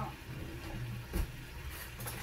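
Faint sizzling of chicken thighs searing in oil in an Instant Pot on sauté, over a steady low hum, with one light tap a little over a second in.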